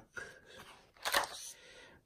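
Paper pages of a spiral-bound songbook being turned, a rustle followed by a sharper, louder flick of paper about a second in.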